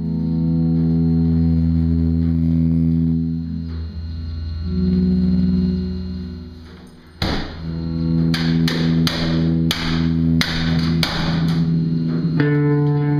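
Improvised post-rock instrumental jam. Held low bass and keyboard drones run for about seven seconds. Then a loud drum hit comes in, followed by heavy drum strikes about twice a second over the sustained tones.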